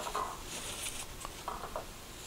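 Faint soft rubbing and dabbing of a cloth wiping the rim of a plate clean.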